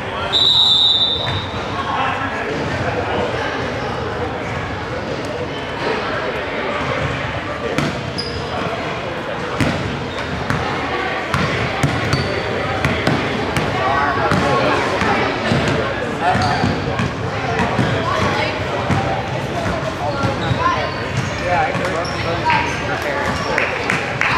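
A referee's whistle blows once, briefly, right at the start, the loudest sound. After it comes the constant chatter of players and spectators in a gym, with a basketball bouncing and other short knocks on the court floor.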